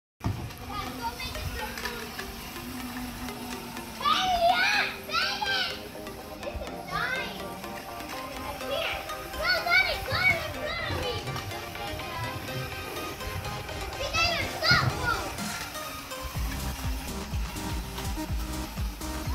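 Children's voices shouting and calling out at play, loudest in bursts about four, ten and fifteen seconds in, over background music.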